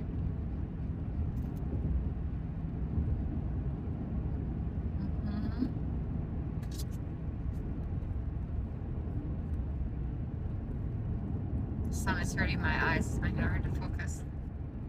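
Steady low road and engine noise of a car cruising at highway speed, heard from inside the cabin, with a voice speaking briefly near the end.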